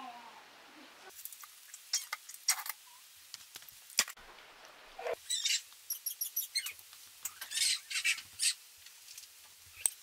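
Hands working brown sugar and barbecue sauce into a raw pork loin roast in a slow cooker crock: a string of short, irregular squishing sounds with a few sharp clicks.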